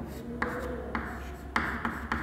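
Chalk writing on a chalkboard: scratchy strokes broken by a few sharp taps as the chalk meets the board, roughly every half second.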